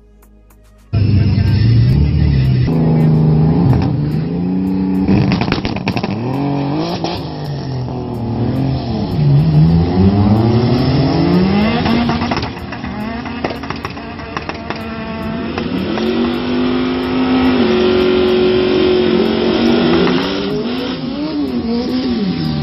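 Drag race car's engine revving hard at a drag strip, its pitch climbing and falling again and again. It eases off about twelve seconds in, then climbs once more. Tyre squeal sits under the engine, with burnout smoke over the starting line.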